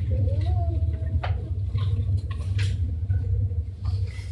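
Steady low room hum, with a few soft clicks and rustles of a hand drawing a card from a jar. The sharpest click comes about a second in, and a faint voice murmurs near the start.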